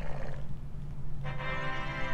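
A unicorn sound-effect preview in the Jimu robot app, played through an iPad speaker. It starts about halfway through as one steady pitched tone with many overtones and holds without a break.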